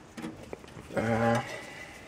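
A man's voice making one short, drawn-out hesitation sound at a level pitch about a second in, a held "uhh" or "mmm". Around it are a few faint clicks from handling cables and a test circuit board.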